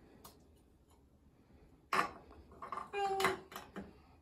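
Small plastic toy figures handled on a porcelain bathroom sink: one sharp click about halfway through as a figure is set down, then a short wordless vocal sound from a child.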